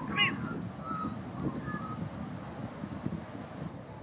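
A flock of sheep moving through long grass, making a steady low shuffle and rustle of hooves and bodies. Right at the start a bird gives a short loud call, and a few brief whistled notes follow in the first two seconds.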